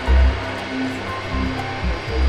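Steady rushing noise of the Boeing 747 Shuttle Carrier Aircraft's four turbofan engines as it taxis, with wind buffeting the microphone in low thumps about every half second.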